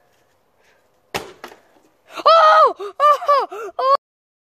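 A sharp knock about a second in and a lighter second knock just after, from a plastic water bottle landing on a hard surface. Then boys yell loudly in high, excited cries that rise and fall, in several bursts, and cut off abruptly.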